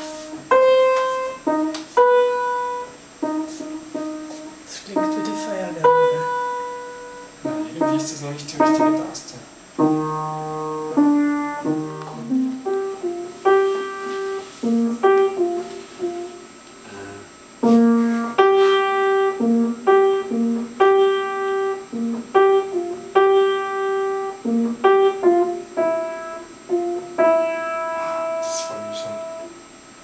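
Yamaha upright piano being played: a melody over chords, the notes struck one after another and left to ring. The player says he has not played for months.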